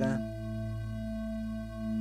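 Sustained ambient synth pad from a Native Instruments Massive patch, holding a chord of several steady pitches over a low bass tone, with a slight dip in level near the end.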